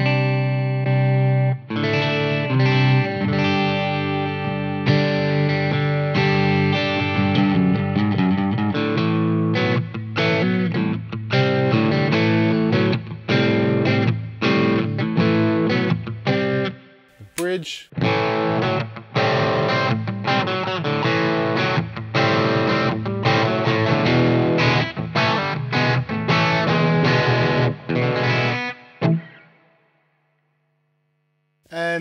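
Electric guitar, a Fender Telecaster on its neck and middle pickups, played through a pedalboard into a Victory DP40 amp, going from a clean sound to a light crunch from a Greer Lightspeed overdrive. The playing breaks off briefly with a click a little past halfway, then carries on until it stops just before the end.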